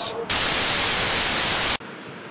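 A loud burst of white-noise static, about a second and a half long, cutting in and out abruptly at a cut between two clips.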